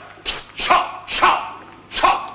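A dog barking, about four sharp barks in quick succession, roughly two a second.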